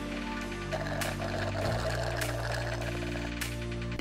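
Background music: sustained chords with a soft beat, the chord changing a little under halfway through.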